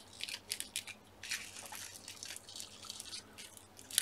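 Faint rustling and crackling of small paper flowers and card being handled and pressed into place by hand, a string of soft crinkles and brushes.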